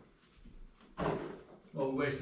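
A single sharp knock about a second in, fading quickly, followed by a man's voice starting near the end.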